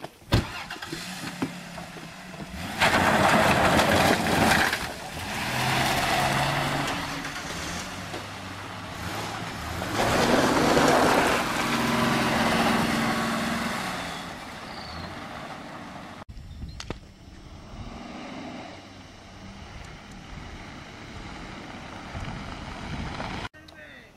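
A car driving off fast on a gravel dirt road, its engine revving in two loud surges with tyre and gravel noise, after a sharp knock just at the start. After about 16 seconds a quieter, steadier car running replaces it.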